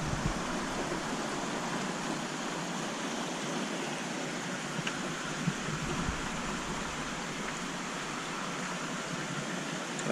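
Steady rushing water noise from a large aquarium's water circulation and aeration, even throughout.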